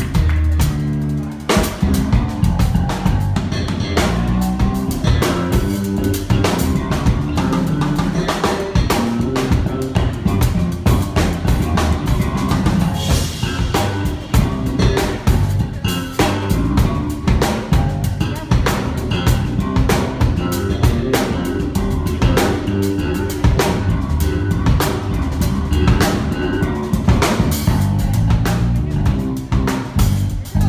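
Live rock band playing: a drum kit keeps a steady beat with bass drum and snare hits under electric guitars.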